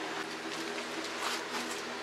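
Steady low hum with faint hiss, the garage's background, with a few faint rustles near the middle.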